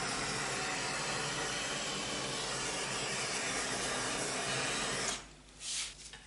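Handheld butane torch flame hissing steadily as it is passed over wet acrylic pour paint to bring up cells, cut off about five seconds in.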